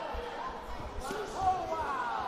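Voices shouting from cageside, with a few low thuds in the first second and a sharp knock about one and a half seconds in.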